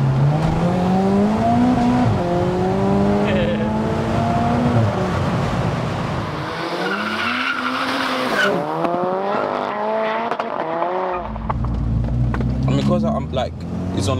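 Big-turbo MK5 Golf GTI's turbocharged four-cylinder accelerating hard, heard inside the cabin: the revs climb, dip at a gear change about two seconds in, and climb again. From about seven seconds it is heard from the roadside, with a hiss and its pitch rising then falling as it drives past. A steady cabin drone returns near the end.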